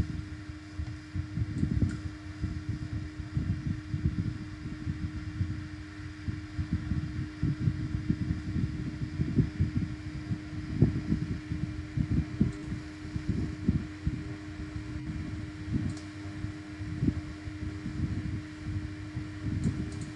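Background noise on a computer microphone: a steady hum with an uneven low rumble beneath it, like a fan or air conditioning.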